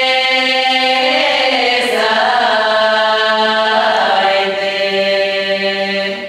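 Bulgarian women's folk choir singing long held chords in close harmony; about two seconds in the lower voice steps down and the new chord is held to the close of the phrase.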